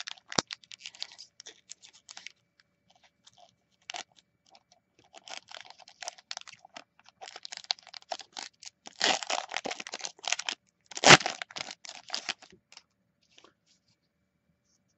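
Magic: The Gathering booster pack's foil wrapper being torn open and crinkled by hand: an irregular run of crackles and rustles, the loudest about eleven seconds in.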